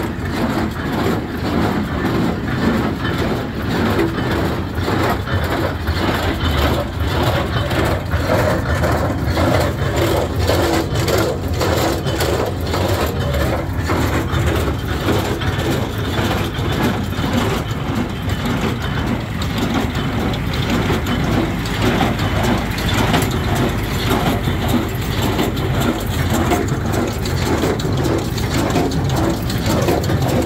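Welger AP 730 small square baler running off a tractor's PTO, the tractor engine running steadily under a continuous mechanical clatter from the baler's drive.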